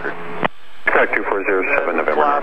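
A voice coming over the aircraft radio, band-limited and radio-like. A short hiss ends in a click about half a second in, and the speech begins just under a second in.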